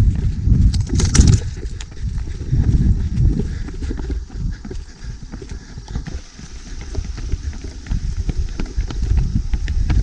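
Running footsteps on a dirt and stone trail, a quick run of knocks, with wind rumbling on the microphone.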